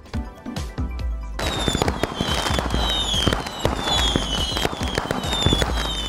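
Fireworks sound effect over background music: a dense crackling with thuds and repeated high whistles that fall in pitch, starting about a second and a half in and stopping near the end.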